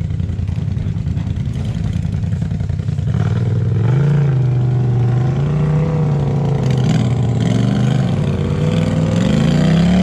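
Off-road vehicle engine revving on a rocky trail climb. It runs steadily, gets louder about three seconds in, then its pitch rises and falls with the throttle and climbs again near the end.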